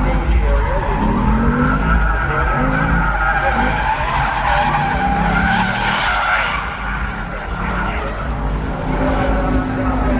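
Chevrolet Camaro engine revving hard while its tyres squeal and skid under wheelspin. The tyre noise grows loudest in the middle, then eases.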